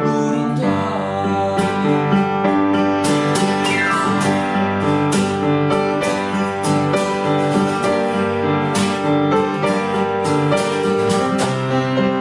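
Acoustic guitar strummed in a steady rhythm together with a keyboard playing chords, a duo performing a song.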